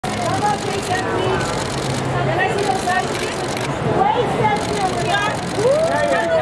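Babble of many overlapping voices calling out at once, as photographers shout for a pose, with no single voice standing out.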